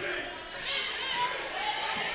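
Echoing sound of a school gym during a volleyball rally: distant shouts and voices of players and spectators over the hall's reverberant hum.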